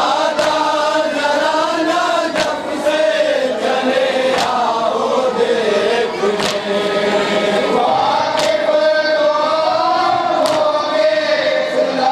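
Men chanting a nauha, a Shia mourning lament, in unison into a microphone, with a sharp collective chest-beat of matam landing about every two seconds.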